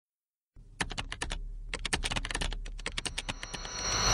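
Rapid clicking of typing on a keyboard, several keystrokes a second in runs with short pauses. Near the end the clicks give way to a louder swell with a high ringing tone.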